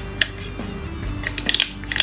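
Small spoon scraping and clicking against a plastic dessert container, a few short scrapes to get out the last bits, over steady background music.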